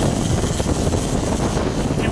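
Steady wind buffeting the microphone on a moving sport-fishing boat, over a low rumble of the boat's engine and water rushing past the hull.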